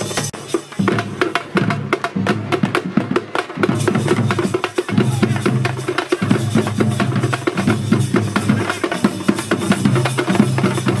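A folk drum troupe playing frame drums and barrel drums in a fast, dense rhythm of sharp strokes.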